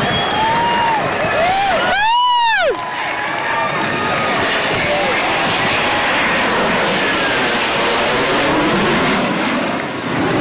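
Blue Angels F/A-18 Hornet jet flying over, its engine noise a steady rush with a sweeping, phasing sound about two seconds in. Voices of spectators are heard faintly under it.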